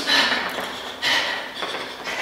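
A person breathing hard from exercise: two sharp, hissy exhales about a second apart.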